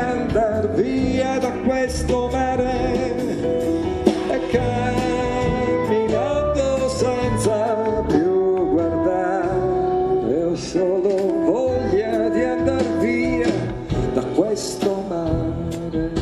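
Live piano ballad: a grand piano with a male voice singing a wavering melody, and light percussion of cymbal and hand-drum strokes behind.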